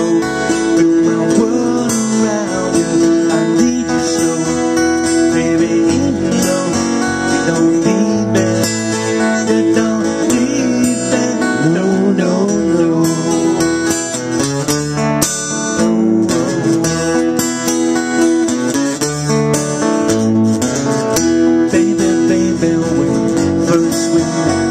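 Live acoustic band music: strummed acoustic guitars carrying the song's chords at a steady pace, with a melody line over them.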